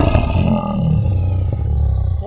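Deep, loud creature roar sound effect, held steady throughout.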